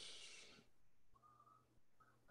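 Near silence: faint room tone, with a soft hiss fading away in the first half second.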